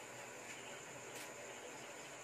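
Faint, steady high-pitched chirring of insects under a low background hiss.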